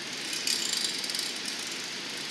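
A steel blowpipe being rolled across a glassblower's metal bench while hot glass picks up cane. It gives a brief metallic rattling about half a second in, over a steady hiss.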